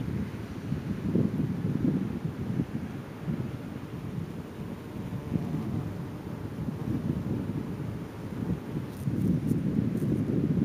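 Wind buffeting a pocket camcorder's built-in microphone, a low, uneven, gusting rumble. A couple of faint clicks come near the end.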